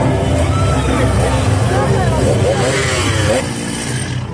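A petrol chainsaw running loud, its engine revving, with people's voices over it; the engine drops off near the end.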